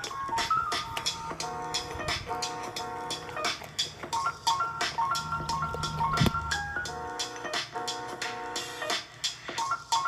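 Background music with a steady beat and a melody of short, stepping notes.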